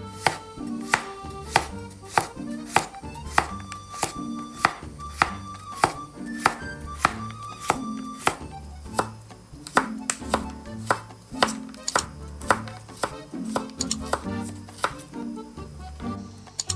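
Chef's knife slicing through cucumber onto a wooden cutting board, a sharp knock with each cut, about two cuts a second, over background music.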